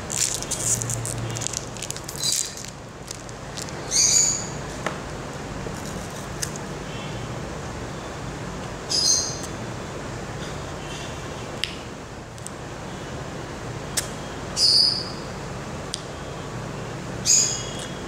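A bird giving a short high-pitched call about six times, a few seconds apart, over a low steady hum. In the first seconds a plastic chocolate wrapper crackles as it is torn open, and faint clicks follow.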